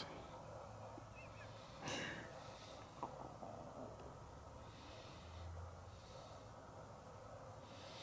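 Quiet room tone with a single short, faint breath or sniff from a person about two seconds in, and a faint low hum around the five-second mark.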